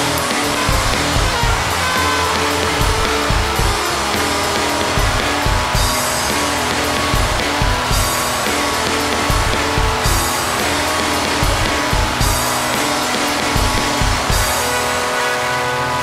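Sludge/noise-rock band playing: dense distorted guitar over a heavy drum beat, with a cymbal crash about every two seconds.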